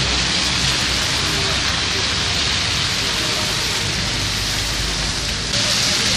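Steady wet hiss of a street in melting snow, the sound of water and slush on the road, with a small jump in loudness about five and a half seconds in.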